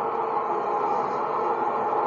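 Steady crowd noise from a televised cricket match, heard through the TV's speakers.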